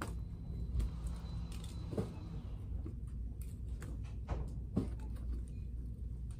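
Steady low background rumble with a few light clicks and rustles of plastic-wrapped party-supply packages being handled on store display pegs.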